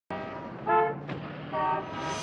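Vehicle horn sounding twice, two short steady-pitched honks about a second apart, over a steady traffic background.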